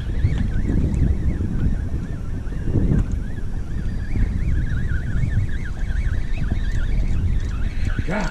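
Wind buffeting the microphone, a loud low rumble throughout, with a faint wavering high whine running beneath it for most of the time.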